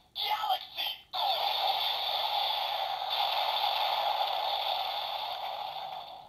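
DX Seiza Blaster toy with the Rashinban Kyutama loaded, playing its electronic sound effects through its small speaker. A few short clipped sounds come in the first second, then a long steady hissing electronic effect runs for about five seconds and fades slightly near the end.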